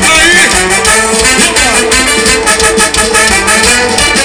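Loud live carnival band music with a steady beat, amplified through the sound system of a trio elétrico truck.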